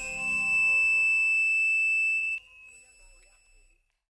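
A single sustained high ringing tone closes the isolated drums-and-tambourine track. It swells slightly, holds steady, and cuts off abruptly about two and a half seconds in, leaving a brief faint tail and then silence.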